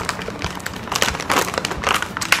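A Honey Butter Chip snack bag crinkling irregularly as it is handled.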